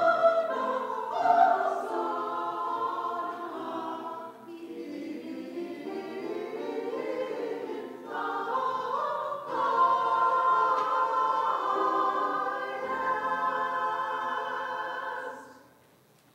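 Small mixed choir of men's and women's voices singing a sacred piece together; the singing stops about fifteen seconds in.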